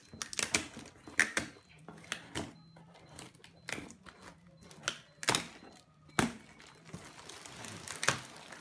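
Scissors snipping through plastic packing tape and cardboard on a parcel: irregular sharp clicks of the blades, several a few seconds apart, with the crinkle and rustle of tape and cardboard being pulled open.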